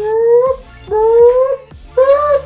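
A voice making repeated drawn-out rising 'ooo' sounds, each about half a second long with short gaps between, three in a row.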